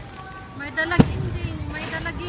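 A single sharp bang about halfway through, with a short low rumble after it, among high-pitched voices.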